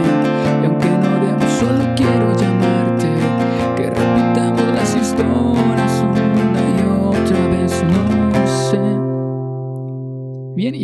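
Classical guitar with a capo at the first fret, strummed steadily through a C-sharp minor, E and B chord progression, with a man singing along. Near the end the last chord is left to ring out and fades.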